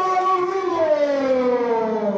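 A loud siren wail, held at one pitch for about a second and then sliding steadily down as it winds down.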